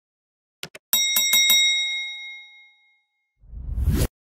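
Subscribe-button animation sound effects: a quick double mouse click, then a small bell rung four times in rapid succession, ringing out for about two seconds. Near the end a low rising whoosh cuts off suddenly.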